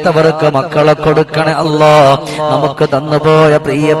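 A man chanting an Arabic supplication (dua) into a microphone, in long drawn-out notes that bend and waver in pitch, broken by short breaths between phrases.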